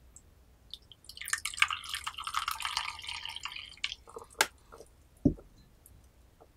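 Tea poured into a small white porcelain cup, a splashing trickle lasting about three seconds. It is followed by a sharp clink and then a dull knock as tea ware is set down.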